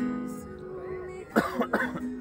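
Acoustic guitar chord strummed and left ringing between sung lines, fading over about a second. Near the end, two short loud bursts from a voice cut in, the loudest sounds here.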